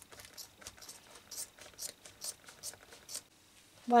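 Scissors snipping through a quilted boot shaft: a quick run of short crisp snips, a few per second, stopping about three seconds in.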